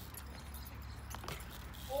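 A BMX bike rolling quietly over a concrete skatepark floor, with a few faint light clicks from the bike.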